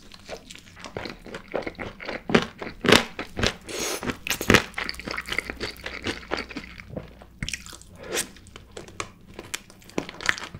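Crunching and chewing as a sauced Korean fried chicken drumstick is bitten into and eaten, with irregular crisp crackles from the coating that are loudest about three seconds in.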